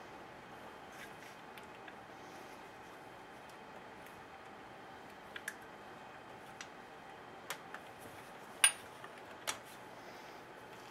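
Scattered light clicks and taps of plastic and metal chainsaw parts being handled while the top end of a Husqvarna 350 is stripped to get at the spark plug. A few ticks start about halfway through, with one sharp knock near the end, over a faint steady room hiss.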